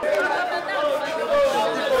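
Crowd chatter: many voices talking at once, overlapping, with no single voice standing out.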